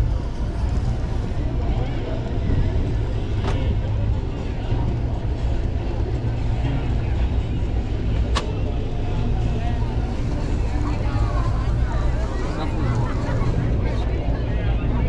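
Low, steady rumble of a large motor boat's engines as it passes close by, mixed with wind buffeting the microphone and water noise. Two sharp clicks, one a few seconds in and one about eight seconds in.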